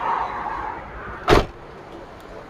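A truck door shutting with one loud thud about a second and a half in, after a softer noise that fades over the first second.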